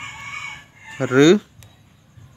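A chicken calling briefly in the background, a thin high call in the first half-second, with a short spoken syllable about a second in.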